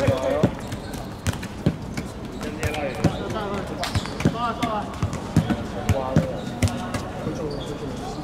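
Players' voices calling out across a football pitch, over a dozen or so irregular sharp thuds of a ball bouncing.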